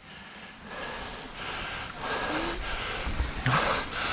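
A mountain biker breathing hard in a few long, noisy breaths while pedalling uphill in a low gear.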